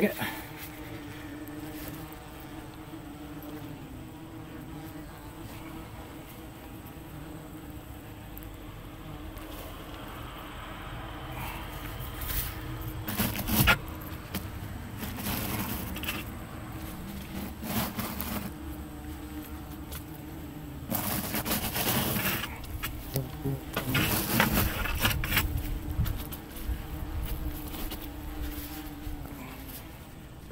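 German yellow jackets buzzing steadily around their exposed paper nest, a low continuous hum. A few louder short noises break in around the middle and in the second half.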